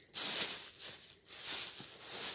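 Crinkling and rustling of packaging as fat-quarter fabric is handled, in several short swells.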